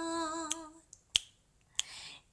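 A woman singing unaccompanied holds one long note, which fades out just under a second in. Three sharp finger snaps follow, about 0.6 s apart.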